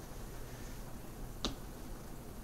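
A single sharp snap of hands striking together about one and a half seconds in, over faint room tone.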